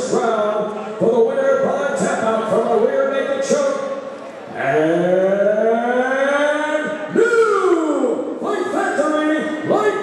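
A male ring announcer's amplified voice reading the fight result. About four and a half seconds in comes one long drawn-out call that rises in pitch and then falls, the stretched-out announcement of the winner.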